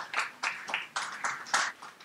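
A small audience clapping: a few people's uneven hand claps, about four a second, dying away near the end.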